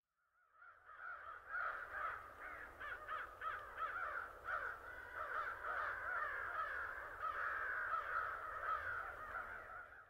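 Birds chattering, many quick warbling chirps overlapping in a dense run, fading in over the first second or so.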